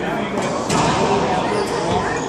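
Racquetball serve in a doubles match: two sharp cracks about a third of a second apart early in the first second, a racquet striking the ball and the ball smacking the wall, followed by background voices.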